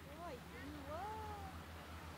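A cat meowing twice: a short rise-and-fall meow, then a longer one that rises and slowly trails off.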